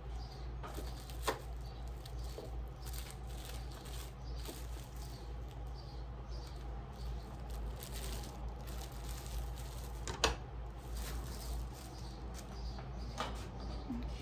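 Plastic wrap film and bagged bars rustling as they are handled, with two sharp clicks, one about a second in and one about ten seconds in, over a steady low hum.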